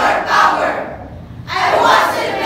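Speech choir of young voices declaiming loudly in unison, with a short break of under a second in the middle before the group comes back in.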